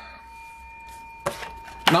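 Cardboard scratch-off lottery ticket being handled and flipped over on a wooden tabletop: a brief scrape a little past halfway, then a sharp tap of the card against the wood near the end.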